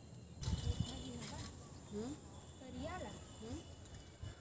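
A person's voice, indistinct, in short phrases that rise and fall in pitch. A few low thumps come about half a second in.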